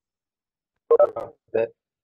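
Speech only: about a second of dead silence, then a few words from a man's voice.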